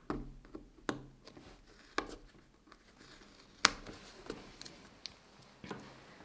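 Metal tweezers and sticker paper handled on a planner page as a sticker is taken off: a scattered run of faint clicks and taps, the sharpest a little past the middle.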